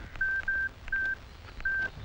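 Mobile phone keypad beeps as a number is dialled: four short beeps at the same high pitch, at uneven intervals, two of them almost back to back.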